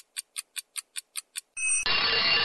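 Ticking-clock sound effect: eight quick, evenly spaced ticks at about five a second, then music starts near the end.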